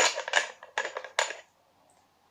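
Small plastic number tokens clicking and rattling against each other and the plastic box as a hand rummages through them to draw one. A quick run of clicks that stops about a second and a half in.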